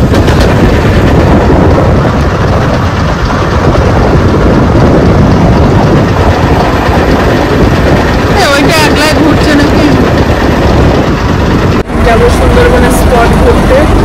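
Loud, steady rush of wind on the microphone and engine rumble aboard a moving river motor launch. A brief call or voice rises over it about eight and a half seconds in, and near the end the sound cuts to a steadier engine hum.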